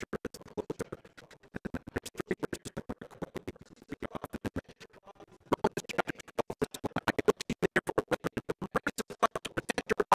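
A man's speaking voice garbled by a digital audio fault that chops it into rapid clicks, about ten a second, so that no words come through.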